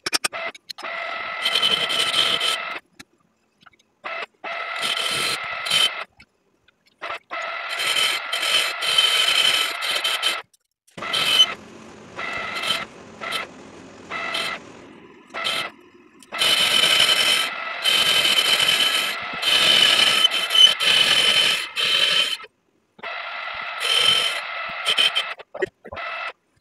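Metal scraping with a ringing overtone on a lathe's three-jaw chuck as its jaws and chuck key are worked by hand, in stretches of one to three seconds broken by abrupt silences.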